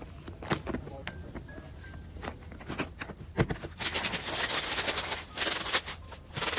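Granulated chemical fertilizer rattling inside a plastic container as it is shaken to mix. A few scattered plastic clicks and knocks come first, then a dense, steady rattle from about four seconds in.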